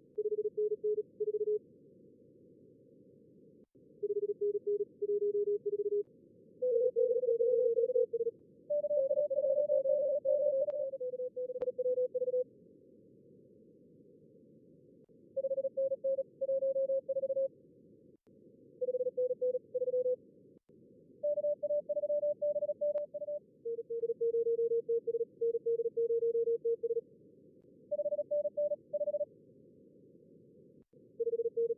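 Simulated contest Morse code (CW) from a logging program's practice mode: keyed tone signals at two slightly different pitches, one per radio, sometimes overlapping, over band-limited receiver-noise hiss. The tones come in short exchanges with pauses between them.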